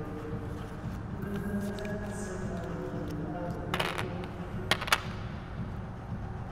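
Low murmur of voices and room noise in a large hall, with a few sharp clicks or taps about four and five seconds in.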